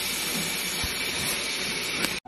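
A steady, even hiss with a faint, constant high tone running through it.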